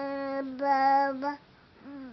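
Baby cooing: a long, steady vowel sound held for more than a second with two brief catches, then a short pause before another coo begins near the end.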